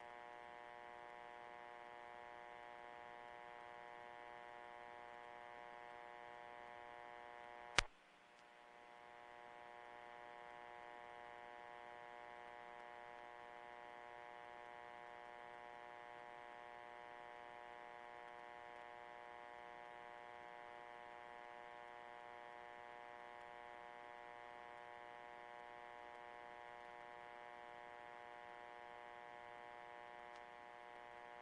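Faint steady electrical buzz, a hum of many even tones that never changes. It is broken once by a sharp click about eight seconds in, after which the buzz dips and slowly comes back.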